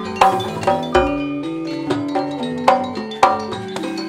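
Gamelan music: ringing metal mallet instruments play a melody over hand-drum strokes, with a few louder struck accents.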